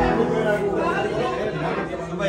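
Several people talking over one another in a room: indistinct group chatter.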